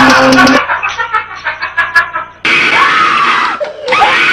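A loud scream breaks in suddenly about two and a half seconds in and holds for about a second, a jump-scare shriek at a computer prank. Before it, after a short loud stretch at the start, comes a quieter, choppy patch of sound.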